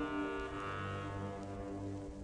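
Orchestral music: sustained held chords, with a low note entering about half a second in while the upper notes fade away.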